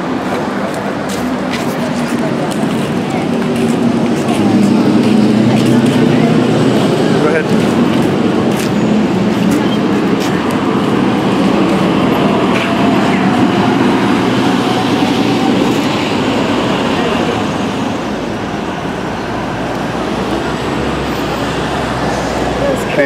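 Street noise on a busy city sidewalk: steady traffic with vehicles passing, and voices of passers-by mixed in, a little louder for a while in the middle.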